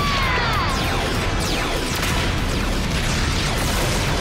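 Action-scene soundtrack: an explosion and its crackling rush, with falling electronic zap tones in the first second, over background music.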